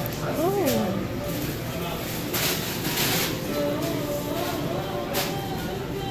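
Indistinct voices of people talking, over steady shop background noise, with a brief hiss about two and a half seconds in.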